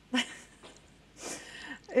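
A short spoken word, then a brief, quiet, breathy chuckle a little after a second in.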